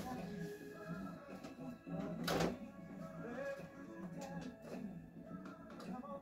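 Faint music from a radio playing in the background, with a short burst of noise about two seconds in.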